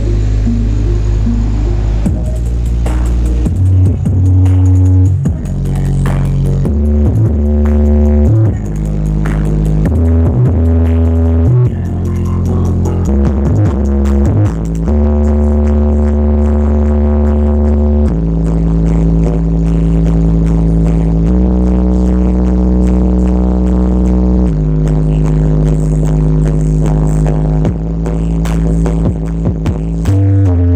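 Loud, bass-heavy electronic music through a large sound system of subwoofer boxes (F1 18-inch and 21-inch). Short choppy bass notes fill the first half, then long held bass notes change pitch every few seconds.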